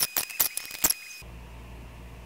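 Quick light clicks and taps of clear plastic enclosures and a cotton bud being handled, over a faint steady high whine; both stop abruptly just over a second in, leaving a low steady hum.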